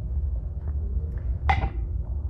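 One short clink with a brief ring about one and a half seconds in, as knitting and yarn are handled, over a steady low hum.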